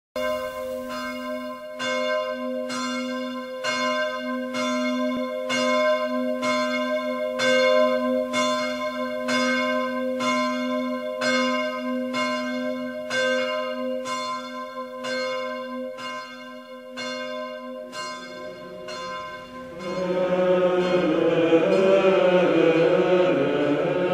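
A single bell struck in quick, even strokes, a little over one a second, each stroke ringing on into the next; the strokes grow weaker and stop a few seconds before the end. Near the end a men's choir begins Gregorian chant in unison.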